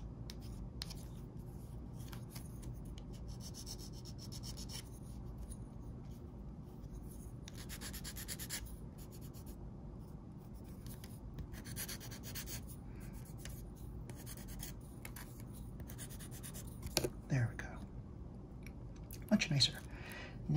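Glass nail file rasping against the plastic edge of a Mini 4WD chassis in irregular short strokes, filing off moulding burrs. Near the end, two brief vocal sounds stand out above the filing.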